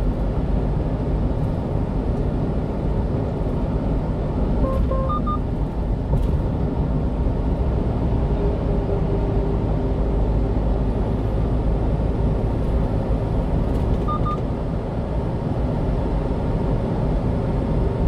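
Steady low driving rumble of a 1-ton refrigerated box truck at road speed, engine and tyre noise heard from inside the cab. Two faint short beeps sound about 5 seconds in and again near 14 seconds.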